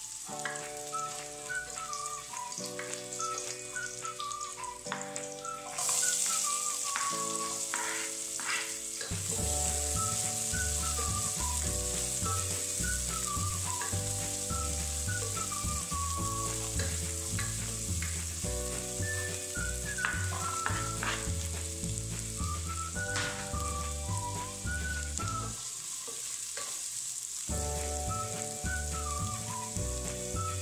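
Garlic and then onions sizzling as they fry in oil in a nonstick pan, with a spatula stirring through them. The sizzle gets louder about six seconds in and again a few seconds later as more goes into the pan. Background music with a melody and a steady bass line plays throughout.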